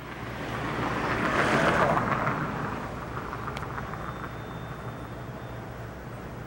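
A vehicle passing on the street: its noise swells for about two seconds and then fades away.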